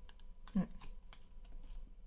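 Several faint, light clicks and taps of oracle cards being handled, with a short murmur from the reader about half a second in.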